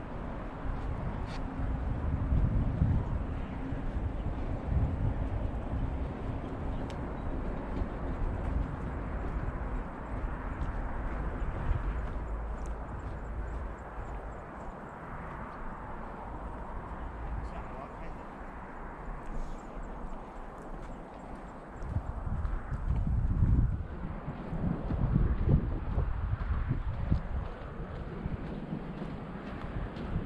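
Wind buffeting the microphone in gusts on an exposed coastal headland, with footsteps on a paved path. The gusts are strongest a couple of seconds in and again after about twenty seconds.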